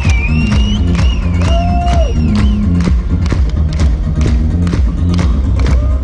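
Live band playing funky dance music with a steady drum beat and a repeating bass line, loud and heard from within the audience; high sliding notes ride over it in the first half.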